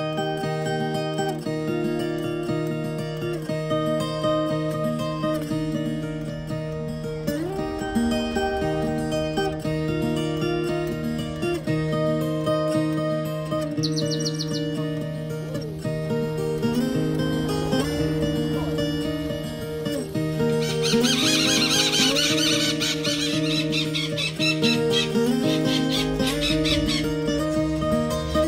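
Instrumental music led by plucked acoustic guitar over a steady low drone. A brief run of quick high chirps comes about halfway through, and a longer stretch of dense high chirping a few seconds before the end.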